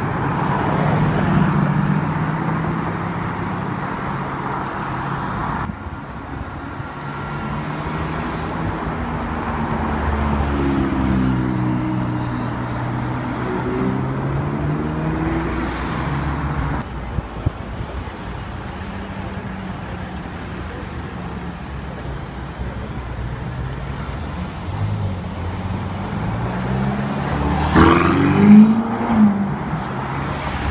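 Sports cars passing one after another in slow street traffic, their engines running at low revs and rising and falling in pitch as each goes by; at the start it is a Mercedes-AMG GT roadster's V8. The loudest moment is a quick rev about two seconds before the end.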